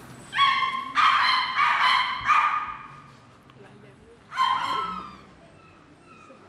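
Small dog yapping: a quick run of about four high yips in the first three seconds, then one more about four and a half seconds in.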